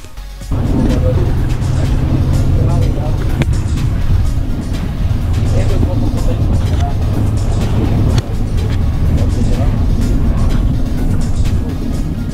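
Background music with a singing voice, coming in about half a second in after a brief dip.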